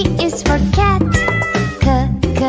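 Cartoon cat meowing several times over upbeat children's music with a steady beat.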